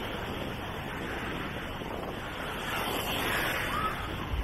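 Small Black Sea waves washing onto a sandy shore in a steady wash, with wind buffeting the microphone.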